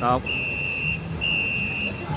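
A night insect calling: a steady high-pitched trill in pulses of under a second, repeating about once a second.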